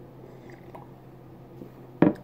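Faint sipping and swallowing of beer from a glass, two small mouth sounds about half a second apart, over a steady low hum.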